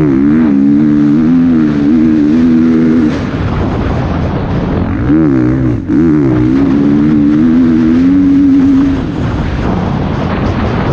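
Dirt bike engine under throttle, its pitch climbing and then held for a few seconds, easing off about three seconds in, climbing again around five seconds and held until shortly before the end. Wind rushes over the helmet microphone throughout.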